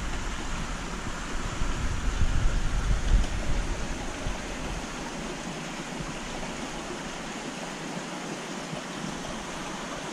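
Steady rushing-water noise from a large aquarium's water circulation and filtration. A deep, uneven rumble runs under it for the first few seconds and drops away about four and a half seconds in.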